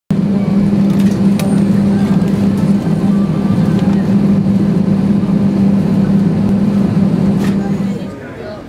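Loud, steady low drone of a parked Airbus A320's running systems heard from inside the cabin, with a strong low hum and a few faint clicks over it.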